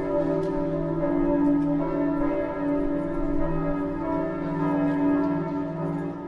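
Bells ringing in a sustained, steady chord of several overlapping pitches.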